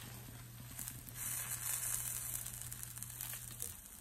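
Dosa sizzling on a hot nonstick pan as it is folded over and pressed down with a slotted spatula; the sizzle swells about a second in. A steady low hum runs underneath and stops just before the end.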